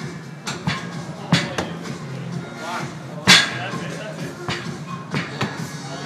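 Dumbbells knocking against the gym floor several times during man-maker reps, the loudest knock about three seconds in, over background music and voices.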